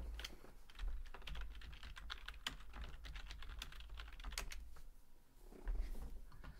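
Fast, irregular typing on a computer keyboard, with a couple of low thumps about a second in and again near the end.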